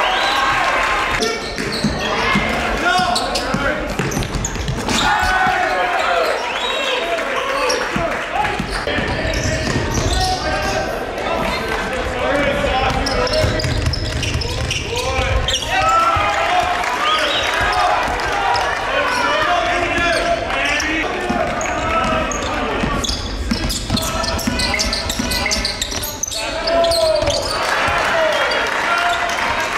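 Live basketball game sound in an echoing gym: a ball bouncing on the hardwood amid players and spectators calling out.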